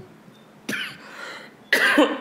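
A man coughing twice into a close microphone, once about two-thirds of a second in and again, louder, near the end.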